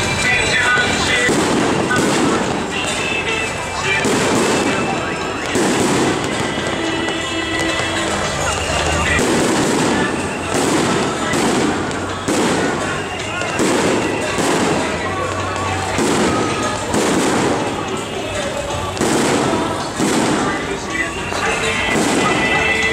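Fireworks going off in a string of irregular bangs, about one a second, over crowd chatter and procession music.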